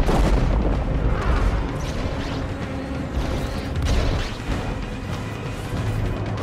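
Dramatic film score music with a deep boom that hits suddenly at the start and another heavy swell of rumble about four seconds in.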